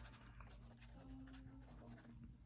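Faint, light scratching of a paintbrush dabbed and dragged across watercolour paper in a few short, irregular strokes.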